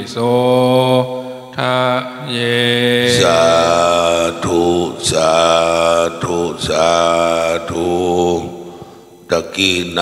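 Pali chanting in long, drawn-out held tones: the closing word of the precept blessing verse, then 'sādhu' intoned three times. The chant ends about eight and a half seconds in.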